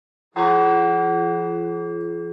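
A single bell-like strike about a third of a second in, its several tones ringing on and slowly fading.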